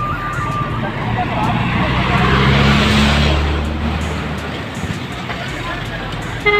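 A motor vehicle passing close by: its engine hum and road noise swell to a peak about two and a half seconds in and then fade, over a background of voices.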